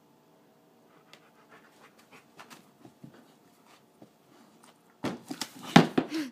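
Black Labrador retriever panting, with faint small clicks and rustles. About five seconds in comes a louder burst of knocks and scraping as she paws at the books on a bookcase shelf, going after a stuck tennis ball.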